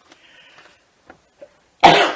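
A person coughs once, a single sudden loud burst near the end, after a moment of near quiet with a couple of faint clicks.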